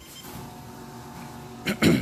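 A man clears his throat once near the end, over a faint steady hum.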